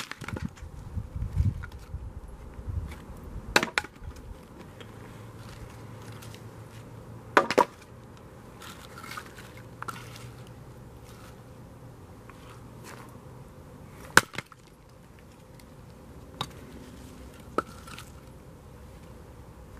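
Hatchet chopping wood on a chopping block: a handful of sharp, loud strikes several seconds apart, with lighter knocks between them.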